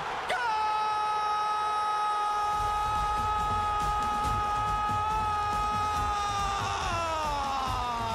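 A television football commentator's long drawn-out goal cry, held on one high pitch for about six seconds and then sliding down in pitch. Under it a stadium crowd's roar swells up a couple of seconds in.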